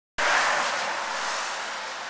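A steady hiss of traffic tyres on a wet road. It comes in abruptly and slowly fades.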